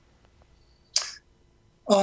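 Near silence with a faint steady hum, broken about a second in by one short, sharp hissing noise.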